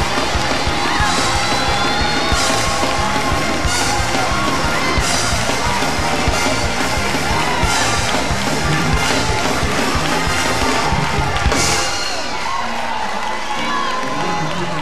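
Church band music with a steady beat and regular crashes about every second and a half, under a congregation's shouting and cheering.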